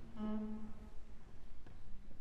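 A single short held musical note, one steady low tone lasting under a second, heard over the quiet hall before the music starts.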